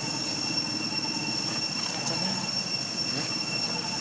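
Insects droning outdoors: a steady, unbroken high-pitched whine over a constant hiss.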